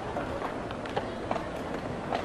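Wooden chess piece set down on a wooden board and the chess clock button pressed: a few short, sharp clicks over a steady background murmur.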